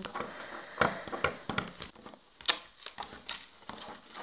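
Fingers picking at and peeling sticky tape wrapped tightly around a packet of trading cards: a run of irregular crackles and clicks.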